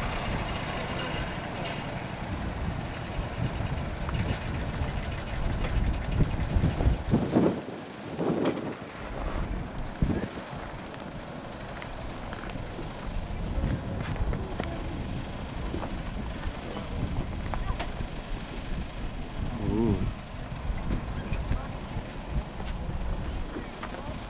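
Scattered talk from people over a steady low rumble, with brief louder voices about a third of the way in and again near the end.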